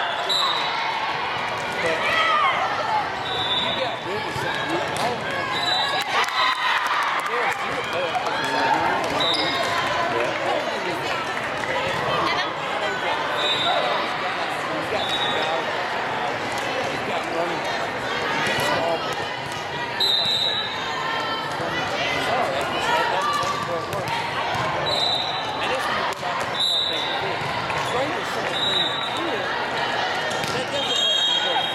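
Volleyball hall ambience: the ball being hit and bouncing again and again, overlapping chatter and calls from players and spectators, and echoing in a large hall. Brief high-pitched chirps sound every few seconds.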